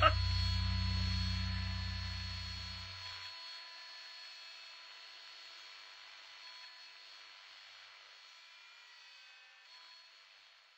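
A low steady hum that fades and cuts off about three seconds in, leaving a faint hiss that dies away toward near silence.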